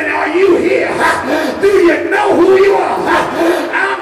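A preacher's amplified voice shouting in a sung, chanted cadence (the 'whooping' style of Black Pentecostal preaching), each phrase rising and falling in pitch, too tuneful for the speech recogniser to take down.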